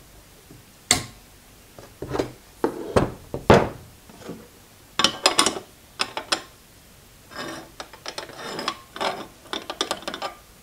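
Locking welding clamps and steel jig pieces being handled on a wooden workbench: irregular sharp metallic clicks and clatter, with the loudest knocks around three seconds in and a denser run of clicks in the second half.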